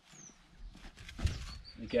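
Footsteps and scuffing on concrete paving slabs, with a dull thump a little past a second in as the pointing gun is set down on a joint. A bird gives a short falling chirp near the start.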